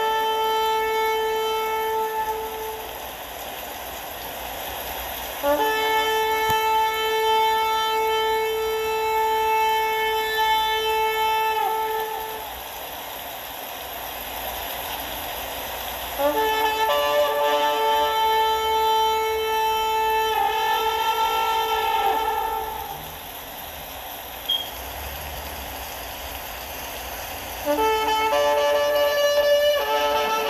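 Long, steady blasts of a shofar (ram's horn): one fading out about three seconds in, then two full blasts of about seven seconds each, with a steady hiss in the pauses between them.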